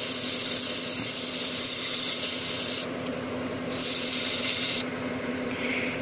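Oak napkin ring spinning on a wood lathe, hand-sanded with sandpaper: a steady rubbing hiss over the lathe motor's hum. The rubbing breaks off briefly about three seconds in and again near the end, leaving only the hum.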